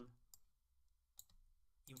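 A few faint, sharp clicks of computer input in near silence, as the text cursor is moved through the code.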